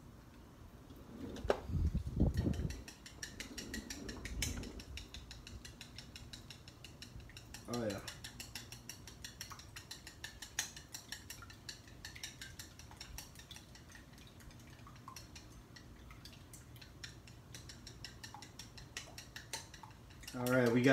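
Wooden chopsticks beating egg in a bowl, clicking against its sides in a quick, light, steady run of taps. A few louder low knocks come in the first few seconds.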